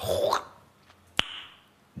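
A man's mouth sound: a short breathy puff, then about a second later a single sharp pop from the pursed lips against the fingertips, trailing off in a brief hiss.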